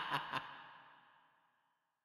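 The end of a film teaser's soundtrack: the last two quick, breathy rhythmic beats, then a fading tail that dies away within about a second.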